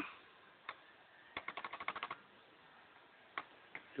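Faint, light plastic clicks from an Asus Eee PC netbook's controls as a setting is changed: a single click, then a quick run of about ten clicks in the middle, and two more near the end.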